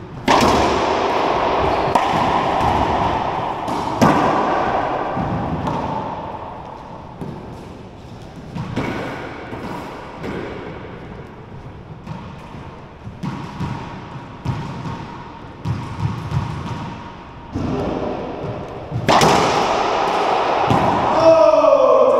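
Racquetball being struck by racquets and rebounding off the court walls and floor during a rally. It gives a sharp crack every second or two, each ringing on in the enclosed court.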